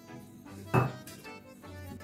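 Quiet background music, with a metal spoon knocking once against a stainless steel mixing bowl a little before the middle while stirring dry flour.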